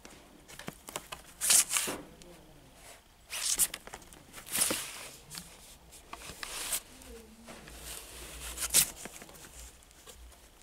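Cardboard LP record jackets swishing and rubbing against each other as they are flipped through in a plastic bin, about five sliding swishes a second or two apart with lighter rustling between.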